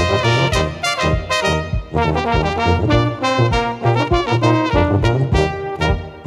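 A brass quartet of two trumpets, a bass trumpet and a tuba plays an up-tempo tune, with a pedal-struck bass drum keeping a steady beat.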